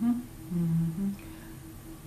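A woman humming three short held notes in the first second or so, over a faint steady background hum.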